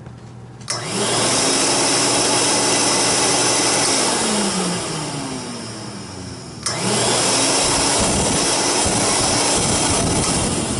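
Hoover Constellation canister vacuum motors switched on with a click a little under a second in, spinning up to a steady whine and then winding down with a falling pitch. A second click, from the toggle switch on the orange vintage Model 444, comes near seven seconds in and its motor spins back up to full speed.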